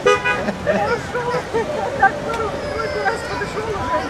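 A brief horn toot right at the start, then scattered distant voices of people chatting.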